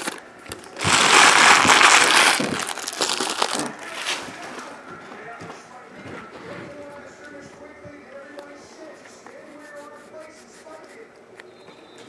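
Foil trading-card pack wrapper crinkling and tearing for about three seconds starting about a second in, followed by quiet handling of a card stack with faint music or a voice behind it.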